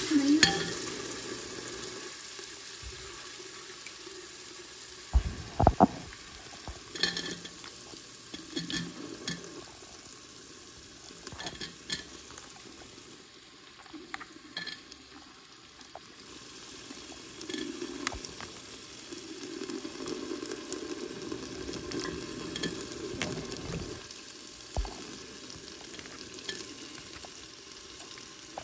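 Aloo matar (potato and pea curry) sizzling in a pan while it is stirred: a steady sizzle with scattered clinks and knocks of the spoon against the pan, and a couple of louder knocks about five seconds in and near the end.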